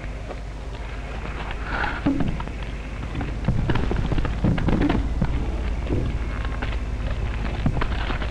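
Sawmill-yard noise: irregular knocks and clatter over a rough, noisy rumble, with a steady low hum underneath.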